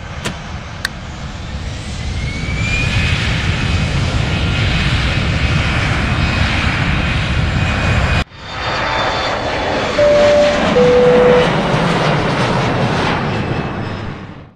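Aircraft engine noise swelling up over the first few seconds, with a brief rising whine. It cuts off suddenly about eight seconds in and comes straight back. About ten seconds in, two steady tones sound one after the other, the second lower.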